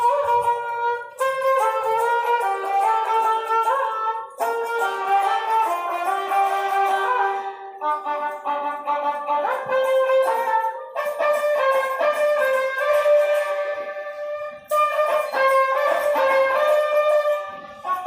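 Ravanahatha, a bowed folk fiddle, playing a melody in phrases of a few seconds each, with short breaks between them.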